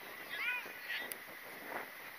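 Crow cawing: a few short arched caws, one after another about half a second apart.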